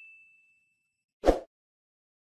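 The high ring of a notification-bell ding sound effect, from a subscribe-button animation, fades out. A little over a second in comes one short, loud swish with a low thump, a video transition sound effect.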